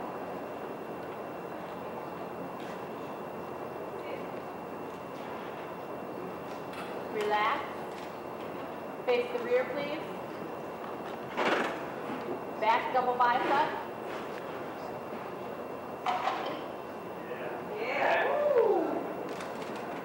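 Short, indistinct calls from voices, heard in scattered bursts over a steady hiss of hall noise. The loudest come about halfway through and near the end, where one call falls in pitch.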